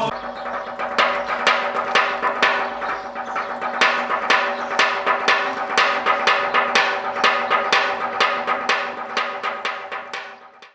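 Percussive music: quick, sharp wooden-sounding strikes, about three a second, over a steady held tone.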